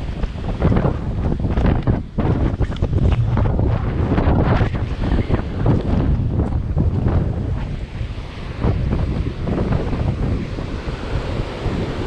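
Loud, gusting wind buffeting the camera microphone, over ocean surf breaking on the rocks below.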